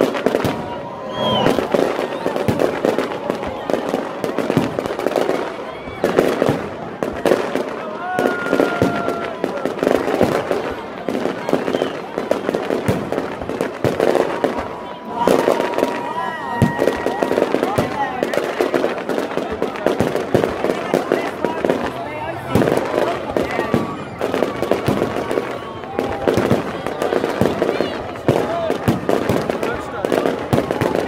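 A fireworks display with a continuous run of bangs and crackling bursts, dense and uneven, with no break. The voices of a watching crowd run underneath.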